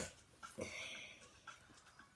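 A short sniff through the nose, lasting about half a second, beginning just over half a second in, with a few faint clicks around it; the sniffing comes with her allergies.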